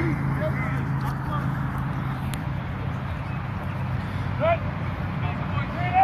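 Outdoor field ambience: steady background noise with a low hum, and a few short, distant shouts from players in the second half.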